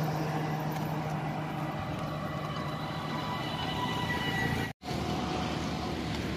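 Road traffic passing close by: a steady hum of engines and tyres, with a motorised three-wheeler going past. The sound drops out for a moment near the end.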